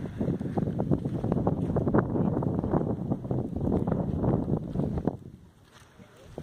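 Wind buffeting the microphone in uneven gusts, dropping away about five seconds in.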